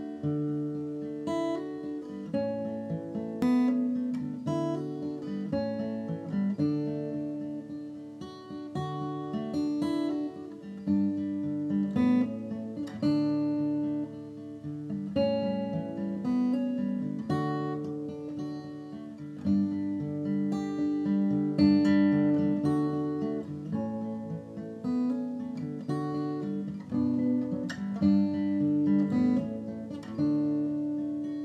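Acoustic guitar music without singing, single notes and chords plucked and left to ring.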